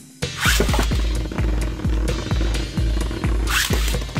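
Background music with a steady thumping beat. About half a second in, two Beyblade ripcord launchers are pulled with a quick zipping rasp as the tops are launched into the stadium, and a similar short rasp comes near the end.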